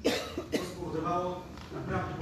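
A person coughing sharply at the start, followed by talking.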